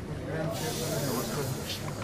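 A steady hiss starts abruptly about half a second in and lasts about a second and a half, over the low murmur of men talking.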